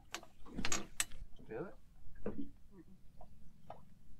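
Indistinct talk, with a few sharp clicks or knocks in the first second or so.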